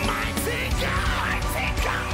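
Live band playing an energetic gospel song, with a steady drum beat and heavy bass running throughout.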